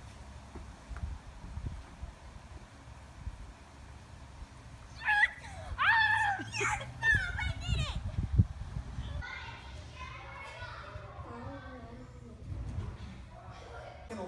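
A child's high-pitched excited shrieks for about three seconds, starting about five seconds in, while playing with a dog, followed by softer talk-like voice sounds. A low rumble, as of wind on the microphone, sits under it.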